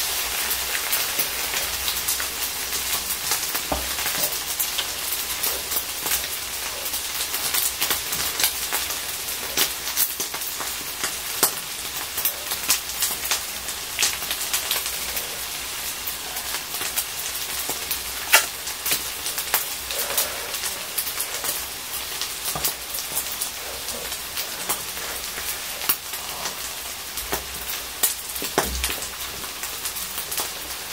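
Fried rice sizzling on a hot electric grill plate, a steady hiss with scattered crackles and pops as the rice crisps into a crust (nurungji).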